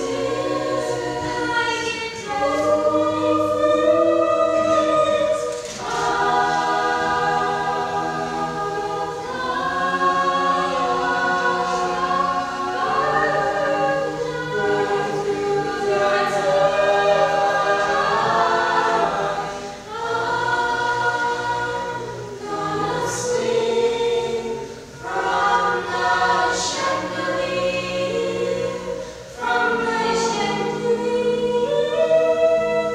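A mixed school choir of girls and boys singing a slow song in several-part harmony, apparently unaccompanied, with sustained chords changing every few seconds.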